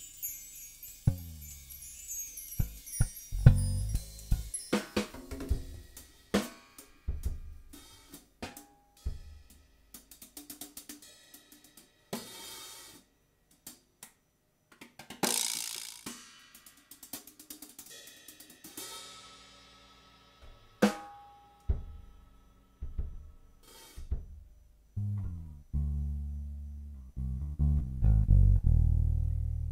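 Loose, free-time drum kit playing: scattered snare, tom and bass drum hits mixed with hi-hat and cymbal strikes, with a long cymbal swell about halfway through. Low bass notes come in near the end.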